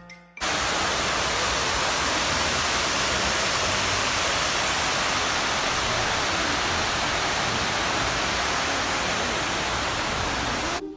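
Steady, even rush of water pouring down the walls of the 9/11 Memorial's waterfall pool. It cuts in suddenly about half a second in.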